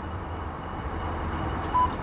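A Ford F-150's memory seat system gives one short beep near the end, the first of the two beeps that come when the memory button is held to program a seat position. The beep sounds over a steady low rumble.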